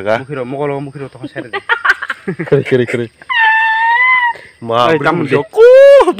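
A person's high-pitched squeal, held for about a second and wavering, then a loud yell that rises in pitch near the end, between bits of talk.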